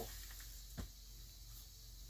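Quiet handling of a plastic container of damp potting mix being tipped into a fabric-lined tub, with one light knock a little under a second in, over a low steady hum.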